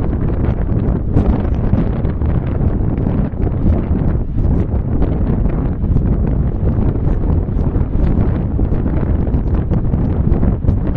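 Wind buffeting the microphone: a loud, steady low rumble that flutters constantly.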